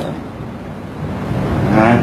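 A low, steady rumbling background noise in a pause between speech, with a voice starting near the end.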